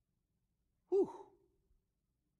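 A man exclaiming "whew" about a second in: a short voiced sound that falls in pitch and trails off into a breathy exhale.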